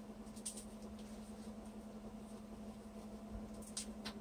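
Quiet room tone: a steady low hum with a couple of faint, short clicks.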